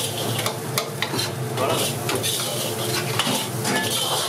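A metal ladle stirs and tosses rice with peas in a hot black wok, scraping and clicking against the pan as the rice sizzles.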